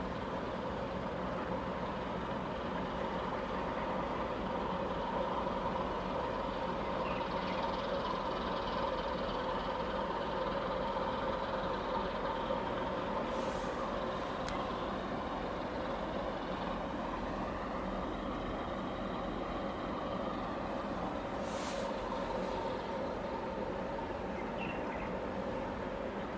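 Steady diesel engine drone from a harbour tug working against a ship's hull, a constant hum over a low rumble. Two short hisses come in, about halfway through and again near the end.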